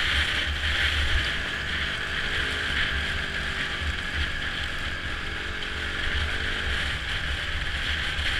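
Wind buffeting the action camera's microphone while riding, over the muffled, steady running of a Honda off-road motorcycle's engine.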